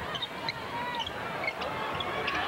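Steady arena crowd noise during live basketball play, with scattered short high squeaks from sneakers on the hardwood court.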